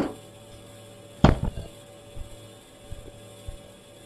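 Potted plants being moved and set down: a sharp knock right at the start and another just over a second in, then a few lighter knocks, over a steady low hum.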